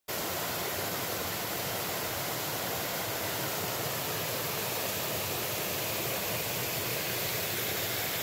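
A rocky mountain stream rushing over stones in small white-water cascades: a steady, even rush of water.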